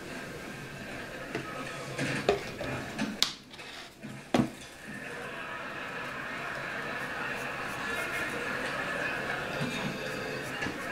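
Faint background television speech, with two sharp knocks of small objects set down on a hard tabletop, a couple of seconds apart.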